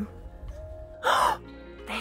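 A woman's short, loud gasp about a second in, a sudden sharp intake of breath, over steady background music.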